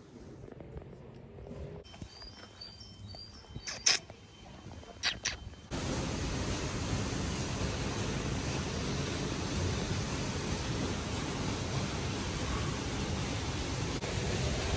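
Faint outdoor background with a few short high chirps and a few sharp clicks. About six seconds in, it switches suddenly to a loud, steady rushing noise that lasts to the end.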